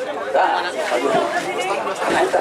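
Overlapping chatter of several voices talking at once, with no single clear speaker.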